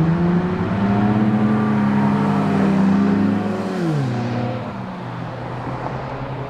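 A car engine running on the street, its pitch creeping up for the first few seconds and then falling steeply about three and a half seconds in, after which it is quieter.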